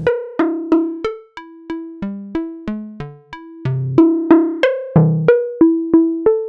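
Software modular synthesizer patch (Reaktor Blocks West Coast DWG oscillator through low-pass gates) playing a sequenced melody of short plucked notes, about three a second, each decaying quickly. The frequency-modulated timbre gets brighter and duller from note to note.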